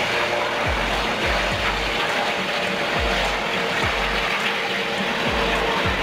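Helicopter with a shrouded fenestron tail rotor flying low, a steady rushing of rotor and turbine noise, mixed with background music that has a deep, repeating kick-drum beat.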